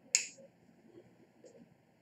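A single sharp click just after the start, dying away quickly, over faint room tone.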